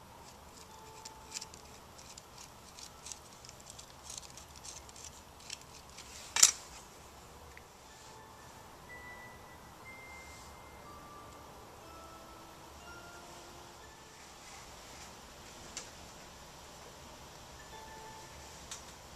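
Light clicks and scraping from a metal rib and hands working a leather-hard clay cup, with one sharp knock about six seconds in. Faint music plays underneath, with scattered soft notes.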